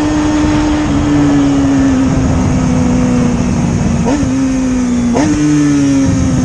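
Motorcycle engine running at a steady speed while riding, its pitch sinking slowly, with two brief throttle blips about four and five seconds in. Wind rush on the microphone runs under it.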